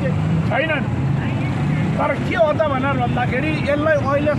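A man talking, with a steady hum of street traffic behind him.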